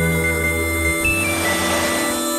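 Film background score: sustained synthesizer chords under a slow melody of long held high notes. The low bass drops out about halfway through.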